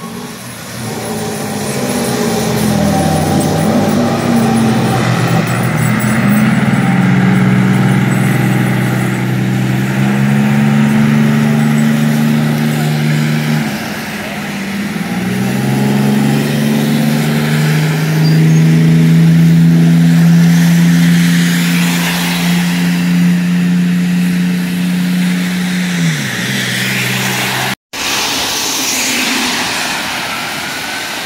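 A fire truck's diesel engine pulling away under load, its pitch climbing and dropping back in steps as the automatic transmission shifts, then winding down near the end. After a sudden cut, tyres hiss past on a wet road.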